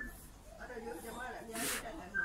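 Background voices talking, with a brief hiss about one and a half seconds in.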